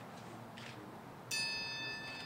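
A bell struck once, about two-thirds of the way in, its clear tones ringing on and dying away slowly. It is a memorial bell tolled after a martyr's name is read.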